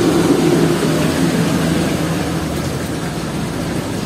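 Steady hum of a running motor, with an even rushing noise behind it.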